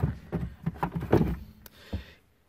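A cordless power tool being handled in a plywood storage cubby, knocking and scraping against the wooden walls and the neighbouring tools with a series of short hollow thuds.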